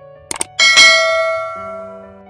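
A quick double mouse-click sound effect, then a bright bell ding that rings out loudly and fades over about a second: the notification-bell chime of a subscribe-button animation.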